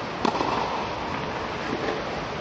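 A single sharp tennis-ball strike about a quarter second in, ringing briefly in the echoing dome hall, over a steady rushing background noise.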